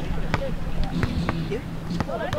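A basketball bouncing a few times, unevenly, on a concrete pier, with children's voices chattering.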